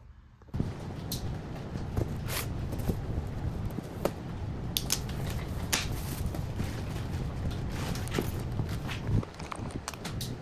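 A cardboard box being opened and its contents handled on a metal table: flaps scraping and rustling, with scattered knocks and taps over a steady background hiss, starting about half a second in.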